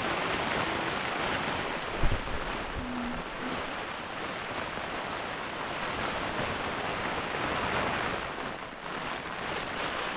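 Steady rushing noise of wind and rain on a tent, heard from inside, with a soft thump about two seconds in.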